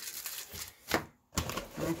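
Packaging and a cardboard box being handled on a table: light scuffing and clicking, with one sharp click about a second in, followed by a brief gap of dead silence.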